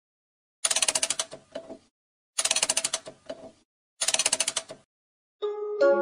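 Three bursts of rapid clattering clicks, about ten a second, each lasting about a second with a couple of slower clicks trailing off. Near the end a jack-in-the-box's music-box tune begins.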